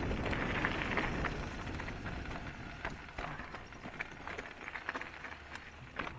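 Downhill mountain bike rolling fast over a dirt and gravel trail: tyres crunching over the ground with many sharp rattles and clicks from the bike as it hits bumps. It is louder in the first half and eases off a little in the second.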